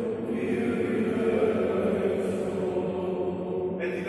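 Greek Orthodox Byzantine chant by male voices, sung on long held notes in a large, echoing cathedral; a new, louder phrase begins right at the end.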